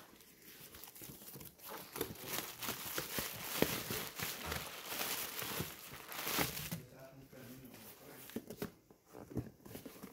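A cardboard shipping box being opened by hand: packing tape tearing, cardboard flaps scraping and plastic air-pillow packing crinkling. The dense crackling is busiest through the middle and thins to scattered rustles and taps near the end.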